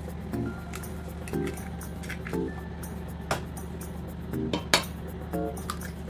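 Eggs tapped against the rim of a stainless steel mixing bowl to crack them: two sharp clinks, about three and then four and a half seconds in. A soft background tune with a note repeating about once a second plays throughout.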